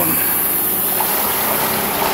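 A motorboat under way through the river: a steady rushing of engine and water noise, with no breaks.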